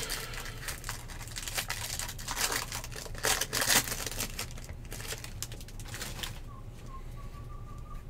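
Foil trading-card pack wrapper being torn open and crinkled in the hands, a rapid crackling for about six seconds before it quiets down.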